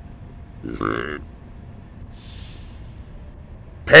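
A man's short burp about a second in, followed by a faint breath.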